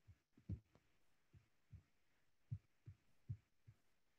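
Near silence of room tone, broken by about nine faint, irregularly spaced low thuds.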